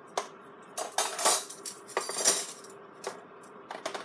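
Clinks and rattles of kitchen utensils and crockery being handled on a worktop, in irregular short bursts, loudest about a second in and again just after two seconds.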